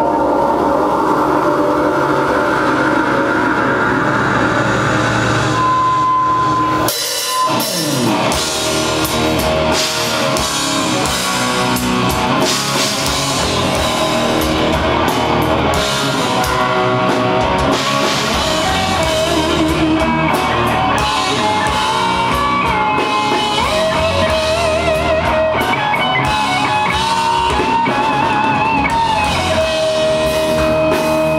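Live rock band playing: sustained electric guitar sound for the first several seconds, a brief drop about seven seconds in, then the full band comes in with drum kit and distorted electric guitars. A lead guitar line with wide vibrato stands out near the end.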